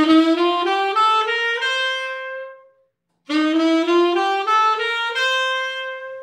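Tenor saxophone playing the G7 bebop scale upward from F: a one-bar run of notes stepping up to a held top note, played twice in a row.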